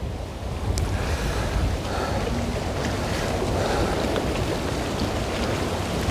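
Wind buffeting the microphone, with a low rumble, over the steady wash of small wind-driven waves lapping at a rocky reservoir shore.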